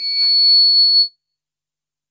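Public-address microphone feedback: a steady high-pitched squeal over a man's voice, with all sound cutting off abruptly about a second in.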